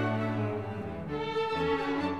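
String music with violin and cello, playing slow, held notes that move from one to the next.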